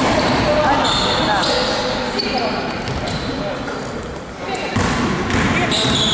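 Basketball game in a gym: a basketball bouncing on the court floor as players dribble, with players' voices calling out in the echoing hall.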